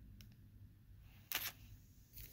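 Handling of clear plastic sleeves holding metal cutting dies: one short crinkle-click a little over a second in, a few faint ticks before it, over quiet room tone.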